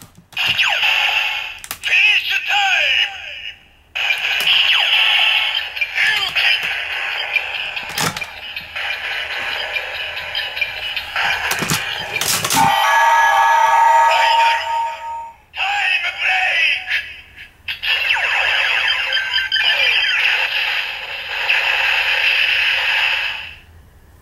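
DX Ziku Driver toy belt, loaded with the Zi-O and Ryuki Ride Watches, playing its electronic finishing-move sequence through its built-in speaker: a synthetic announcer voice, music and sound effects. A few sharp clicks come along the way, and a steady beeping tone is held for a couple of seconds midway.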